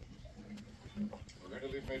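A man's voice in a film's dialogue, played through a television's speaker.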